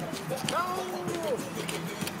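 Several men's voices calling out in drawn-out chant-like shouts during a fraternity stroll, over a few sharp stomps on pavement.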